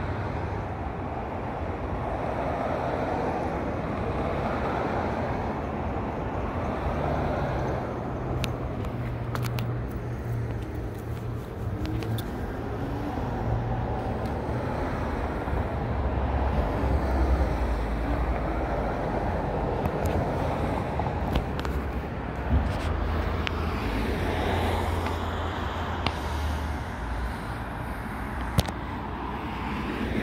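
Steady low rumble of motor vehicles and street traffic, with a few faint clicks.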